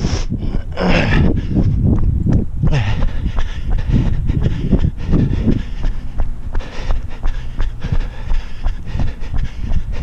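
A runner's hard, rhythmic breathing and steady footfalls on pavement during a fast interval, with heavy wind rumble on the body-worn camera's microphone. The breaths are strongest in the first half.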